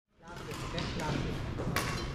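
Badminton play in a large, echoing sports hall: background voices and movement on the court, with one sharp racket hit on the shuttlecock near the end. The sound fades in at the very start.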